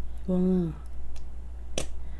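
Squeeze tube of pollock roe being squeezed out onto a rice bowl, giving one sharp pop near the end.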